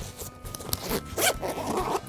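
A zipper on a grey fabric bag being pulled open: a few short rasps, then a longer one near the end.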